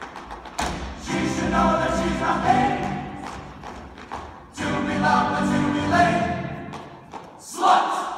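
Stage chorus singing a musical-theatre number with accompaniment, in sung phrases with short dips between them, heard from the audience.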